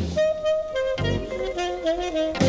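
Live jazz-funk recording with a saxophone playing a lead line of held notes that step from pitch to pitch, over bass and drums.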